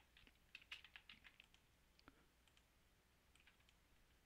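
Faint computer keyboard typing: a quick run of keystrokes in the first second and a half, then a few scattered clicks.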